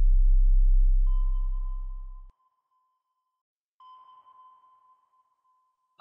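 Electronic intro sound effect: a loud, deep low drone that fades out over the first two seconds, with two sonar-style pings, the first about a second in and a fainter one near four seconds, each a steady high tone ringing out for a couple of seconds.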